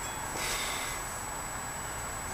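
A faint breath close to the microphone, a soft rush of air about half a second in, over low background hiss with a thin, steady, high-pitched whine.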